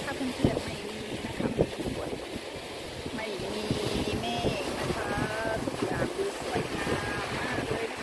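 Wind buffeting the microphone on a moving boat at sea, over a steady rush of water along the hull. Faint voices come through about halfway in and again near the end.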